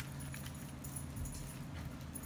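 Quiet room tone: a low steady hum with a few faint clicks.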